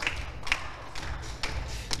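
A few scattered hand claps, applause dying away after a successful shot.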